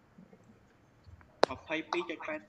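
Quiet room tone, then about one and a half seconds in a single sharp click, followed at once by soft speech.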